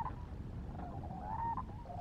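Distant waterfowl calling repeatedly: several short pitched calls in quick succession, one a little longer near the middle, over a steady low rumble.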